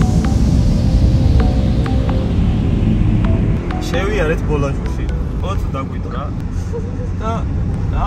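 Steady low road rumble heard inside a moving car's cabin, with electronic dance music playing faintly under it at first. People start talking in the car about four seconds in.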